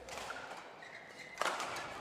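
Badminton rally: a racket strikes the shuttlecock with one sharp crack about one and a half seconds in, echoing briefly in the hall, while court shoes give short squeaks on the floor.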